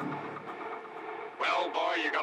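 A person's voice over a steady hum: a brief lull, then speaking again about a second and a half in.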